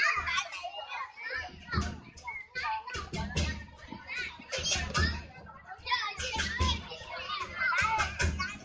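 A crowd of children shouting and calling out excitedly, over the repeated beats and crashes of lion-dance drum and cymbals.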